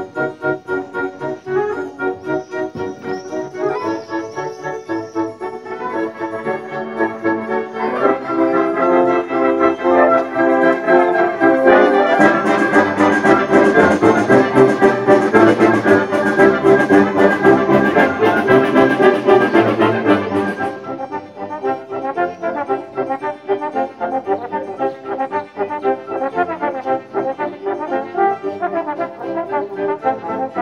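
A concert wind band of clarinets, saxophones and brass playing. The band builds to a loud full-band passage with crashing percussion about twelve seconds in, then drops back to a softer passage about twenty-one seconds in.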